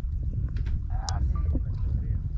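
Wind buffeting the camera microphone, a low uneven rumble, with a few light clicks from the camera being handled.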